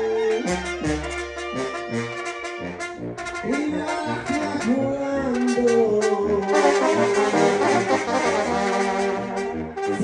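A Mexican brass banda playing a lively tune: trumpets, trombones and clarinets over a low tuba line. Snare drum and cymbals sound close and loud, with frequent sharp strokes, alongside a bass drum.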